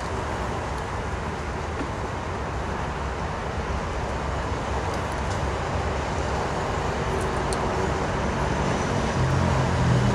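Steady rumble of outdoor motor-vehicle traffic, growing slowly louder, with a low engine hum coming up near the end as a vehicle draws closer.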